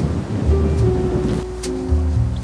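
Background music: a bass line that changes note every half second or so under held steady notes, with a few light ticks on top.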